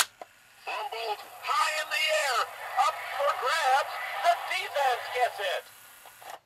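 The 1977 Mattel Talking Monday Night Football sportscaster voice unit playing one of its small play records. A click as its slide is pushed down, then, under a second in, a recorded announcer's excited voice calling the play. The voice is thin and tinny from the toy's small speaker, with a faint hiss.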